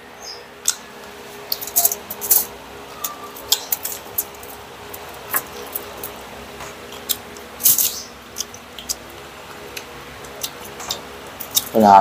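Crispy pork belly crunching and crackling, in irregular sharp bursts, as it is chewed and picked apart by hand on aluminium foil, with a denser cluster of crackles about three-quarters of the way through. A faint steady hum lies underneath.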